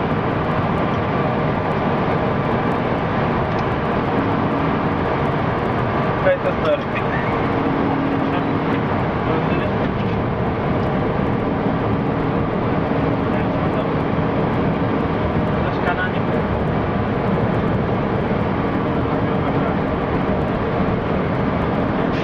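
Bus engine and road noise heard from inside the cab while driving at a steady pace, with a low hum that comes and goes. A couple of brief knocks come about six seconds in.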